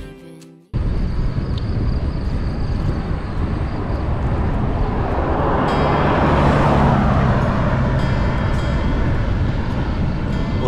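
Intro music cuts off under a second in, then wind and road rumble on a bicycle-mounted camera while riding, with a motor vehicle passing, swelling and fading around six to seven seconds in.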